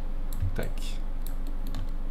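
Computer keyboard keystrokes: several short, separate taps spread through the two seconds.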